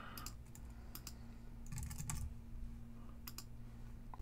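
Faint computer keyboard typing in a few short, scattered runs of keystrokes, with a click or two among them.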